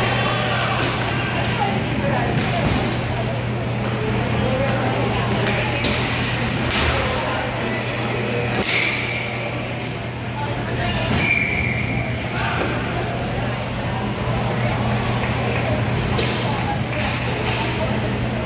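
Indoor roller hockey game: sticks and puck knocking on the rink floor and boards, with players calling out over a steady low hum. A referee's whistle blows twice, about nine and eleven seconds in, stopping play.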